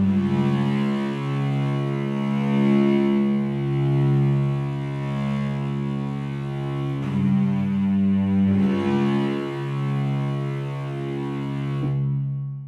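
Sampled cello ensemble from the Hyperion Strings Micro Kontakt library playing slow, sustained low chords, heard through the library's Concert Seating room impulse response. The chord changes about seven seconds in and again a couple of seconds later.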